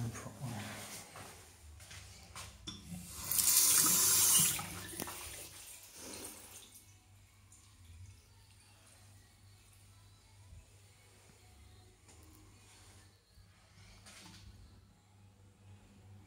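Washbasin tap running: water rushes into the basin for about a second and a half, then eases off and stops about six seconds in.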